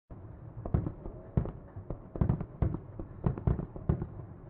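Aerial fireworks shells bursting in a quick, irregular series of sharp bangs, about a dozen, with a low rumble between them.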